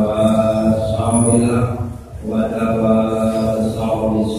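A man's voice chanting in long held notes. There are two drawn-out phrases with a short break about halfway through.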